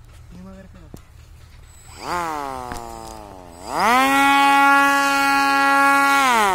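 1000 kV brushless motor with an 8-inch propeller on a hand-held cardboard RC plane. About two seconds in it spins up with a rising whine and slowly eases off, then a little past halfway it is throttled up sharply and held at a loud, steady whine, winding down at the very end.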